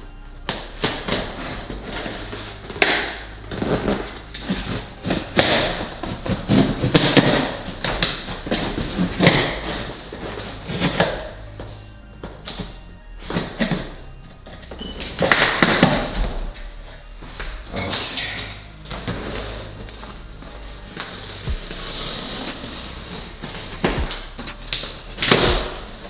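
Background music with a low bass line, over irregular knocks, scrapes and rustles of a large cardboard box being cut open and handled.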